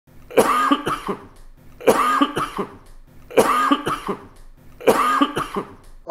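A man's coughing fit: a burst of three or four coughs in quick succession, the same burst repeated four times about every second and a half.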